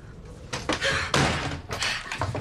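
A door slamming and banging: a run of sharp knocks and thuds lasting about a second and a half, starting about half a second in.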